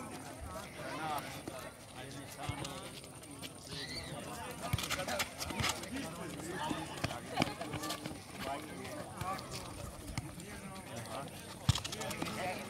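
Indistinct shouting and calls from futsal players and onlookers on an outdoor court, with a handful of sharp thuds from the ball being kicked on the asphalt, the loudest just before the end.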